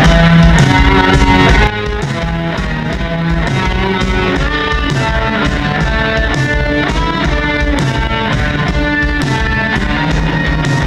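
Live rock band playing: electric guitar, bass guitar, keyboards and drum kit over a steady beat. The music drops suddenly in loudness about two seconds in and carries on at the lower level.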